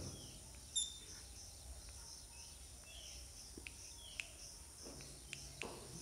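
Faint chalk writing on a blackboard: a few sharp taps and light scratches as a label is written, the loudest tap about a second in. A steady high background whine runs underneath.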